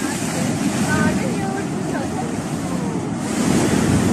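Debris flow of mud and rock surging down a mountain stream channel, a fresh surge arriving: a steady, low rushing rumble.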